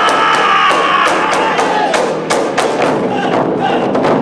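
Japanese taiko drum ensemble playing: sharp stick strikes in a steady rhythm of about four a second, with the drummers' drawn-out shout ending about a second in.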